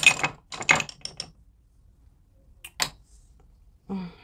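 A few light clicks and taps of makeup products and a brush being handled: a quick cluster in the first second, then a quiet stretch, then two more sharp clicks a little before three seconds in.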